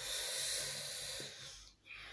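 A long breath out, a steady hiss of air that fades away after about a second and a half.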